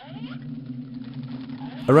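A low, steady droning hum, one low pitch with its octave above, under a faint hiss. It starts suddenly, and a voice begins speaking near the end.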